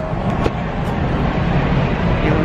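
City street noise: a steady rumble of traffic with a short click about half a second in.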